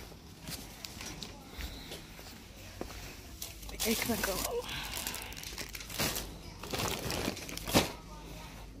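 Plastic packaging crinkling as it is handled, in several short bursts through the second half, the sharpest and loudest near the end.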